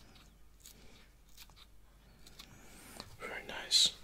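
A few faint snips of scissors cutting spring onion stalks, then close-miked whispering near the end that rises into a short loud burst.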